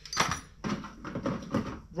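Tackle being handled in a plastic tackle box: a sharp knock near the start, then a run of small clatters and rustles.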